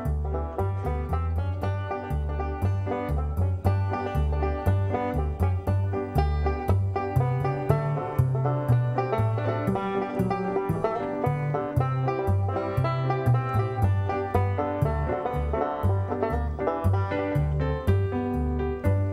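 Resonator banjo picked in a quick bluegrass-style instrumental, with a steady run of plucked notes and bass notes moving underneath.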